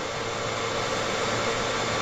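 Steady background hiss with a faint low hum, unchanging throughout: the room and line noise of a video-call microphone during a pause in speech.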